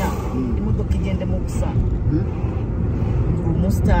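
Steady low road and engine rumble inside a moving car's cabin, with a man's voice talking over it in short phrases.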